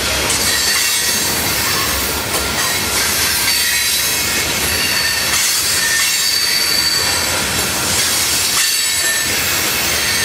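Freight train of coal hopper cars rolling steadily past at close range: a continuous rumble of steel wheels on rail, with thin high wheel squeals that come and go.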